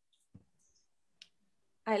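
Near silence on a video call, broken by two faint short clicks about a third of a second and a second in; a woman starts speaking right at the end.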